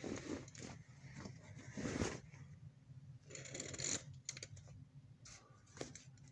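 Faint scattered clicks and short soft rustles of small objects being handled, with a brief murmured syllable about two seconds in.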